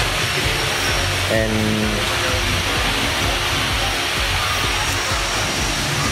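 Steady rushing background noise with a low hum under it, unchanging throughout; a man says a single word about a second and a half in.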